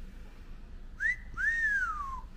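A person whistling two notes in the shape of a wolf whistle. About a second in comes a short upward swoop, then a longer note that rises and slowly falls away.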